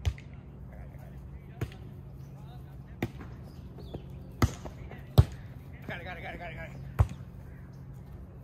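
Volleyball being struck back and forth in a rally: about six sharp slaps of hands and forearms on the ball, a second or so apart, the loudest a little past five seconds in. A brief shout from a player comes about six seconds in.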